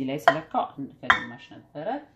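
A measuring cup clinking against a glass mixing bowl as it is emptied into it, two sharp clinks about a quarter second and about a second in.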